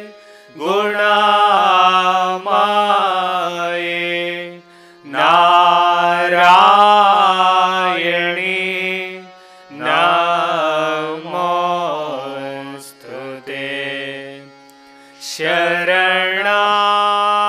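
Devotional bhajan chanting, a single melodic voice singing long phrases of about four seconds with short breaks between them.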